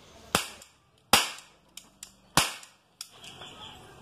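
Toy cap revolver firing plastic ring caps: three sharp cracks about a second apart, with a few fainter clicks between them.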